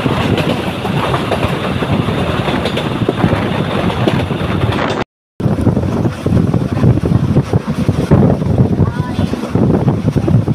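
Passenger train running along the track, heard from an open coach window: a loud, steady rumble and rattle of the wheels and coaches, with wind on the microphone. The sound breaks off for a moment about halfway through, then the running noise carries on.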